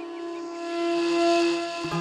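Ney, an end-blown reed flute, holding one long breathy note in slow instrumental music, with a lower held note entering near the end.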